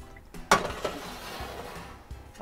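Metal roasting pan set down on the cast-iron grates of a gas range, a sharp clank about half a second in with a few lighter knocks around it, followed by a fading hiss.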